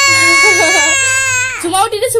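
A toddler's long, steady high-pitched squeal, held for about two seconds and breaking off shortly before the end, with a lower, wavering adult voice beneath it.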